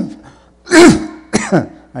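A man coughing and clearing his throat: the end of one cough right at the start, then a harsh cough about three-quarters of a second in, the loudest sound, and a shorter one about half a second later. He puts the coughing down to a Dad's cookie eaten just before his talk.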